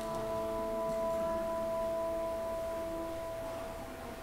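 Church organ holding a soft, steady note with several overtones between the names; the upper tones drop out and it fades near the end.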